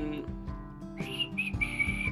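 Soundtrack music with high whistled notes starting about halfway in: two short ones, then one held for about half a second.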